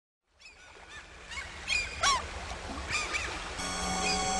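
A flock of water birds calling: a series of short, arching cries, faint at first and growing louder. Music with long held tones comes in near the end.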